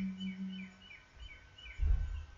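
Small birds chirping over and over, several short falling chirps a second. A steady low hum with overtones fades out about a second in, and a dull low thump near the end is the loudest sound.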